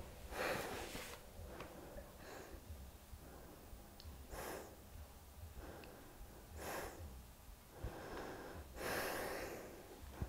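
A woman breathing slowly and audibly while holding a yoga twist: about four soft, faint breaths, each a short rush of air, spaced a few seconds apart.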